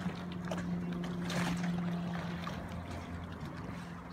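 A steady low motor hum runs over faint lapping of lake water, with a brief splash-like hiss about a second and a half in.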